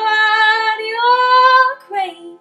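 A young woman singing long held notes without clear words, the second note sliding slightly upward, over the ringing strings of an autoharp; the singing stops just before the end.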